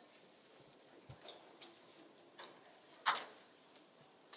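Quiet meeting room with a few scattered light knocks and clicks from people moving about, the loudest about three seconds in.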